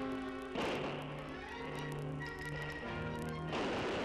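Newsreel background music, broken twice by a sudden loud rushing blast of noise: once about half a second in, fading over a few seconds, and again near the end. The blasts are model rockets firing off their launch pads.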